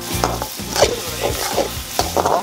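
A steel slotted spoon scraping and stirring through a tomato-onion masala sizzling in a hot steel kadai, with repeated metal scrapes over the frying hiss. A background music beat runs underneath.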